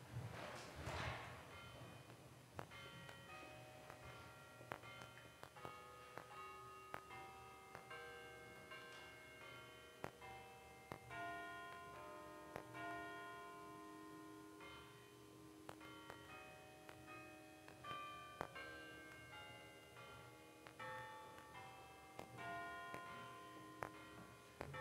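Church organ playing a quiet processional: long held low notes under a moving line of shorter, higher notes, each note starting with a faint click.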